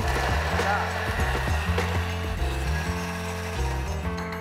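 Thermomix blitzing chopped rhubarb stalks to a fine pulp, a steady whirring noise that stops at the end, over background music.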